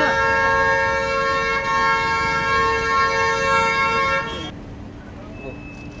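A car horn held in one long, steady two-tone honk that cuts off suddenly about four and a half seconds in, leaving quieter street noise and voices.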